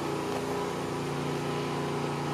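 A machine running steadily: an even hum at one constant pitch.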